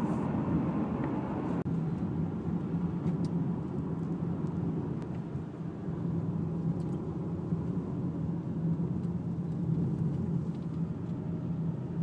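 Steady engine and tyre rumble of a moving car, heard from inside the cabin. There is a brief dip about a second and a half in.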